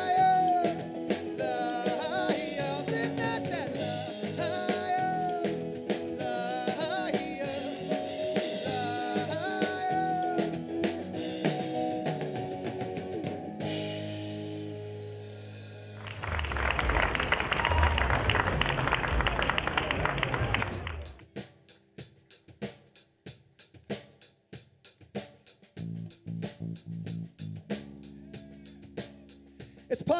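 Live rock band of electric guitar, bass, keyboard and drum kit playing an instrumental passage with a bending lead line. About 16 seconds in, the band hits a loud crashing drum-and-cymbal ending that stops suddenly about five seconds later. A quiet stretch of sparse ticks and a few low notes follows.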